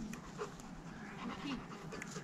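A dog panting close by, in quick, repeated breaths.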